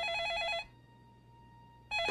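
Corded wall telephone ringing with an electronic ring, a fast warbling trill that cuts off abruptly about two-thirds of a second in, followed by near silence.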